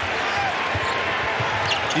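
A basketball being dribbled on a hardwood court: several low bounces over the steady hubbub of an arena crowd.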